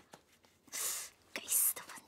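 A voice whispering a short line in Mandarin, a muttered complaint about the mosquitoes, heard as two breathy hisses with no voiced tone.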